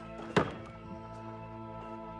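A wooden barn door slammed shut once, a sharp thunk about a third of a second in, over background music with steady held notes.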